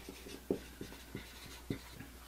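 Dry-erase marker writing on a whiteboard: a faint run of short, irregular strokes and taps as a word is written out letter by letter.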